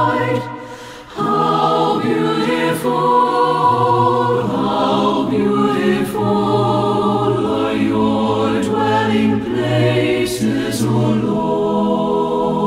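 Unaccompanied mixed choir singing a slow hymn in sustained chords, with a short break between phrases about a second in.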